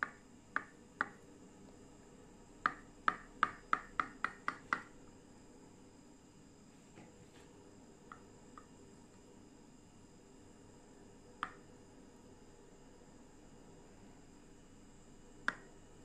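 A knife cutting through a set agar milk pudding on a ceramic plate, the blade tapping the plate in sharp clicks: three at the start, a quick run of about eight a few seconds in, then a few scattered ones.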